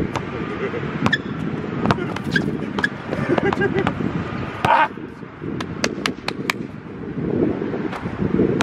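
Wind rumbling on the microphone during an outdoor basketball game, with scattered sharp knocks of the ball bouncing on the court and a brief shout about five seconds in.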